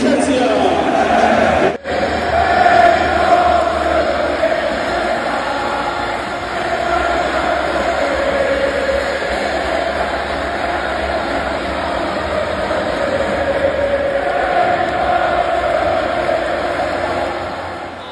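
A large stadium crowd of football supporters chanting together, a sustained wall of massed voices. It cuts out for a split second about two seconds in.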